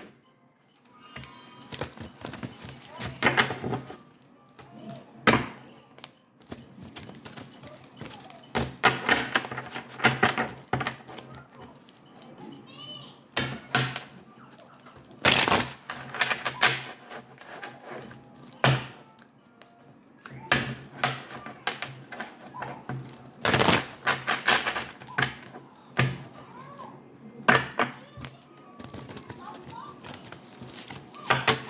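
Tarot cards being shuffled by hand, in irregular short clattering bursts as the deck is riffled and tapped, over a faint steady low hum.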